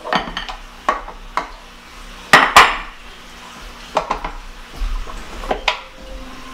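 Glass mixing bowl clinking and knocking against a stainless steel stand-mixer bowl and the counter while dry ingredients are tipped in: a scatter of sharp clinks, the loudest pair about two and a half seconds in.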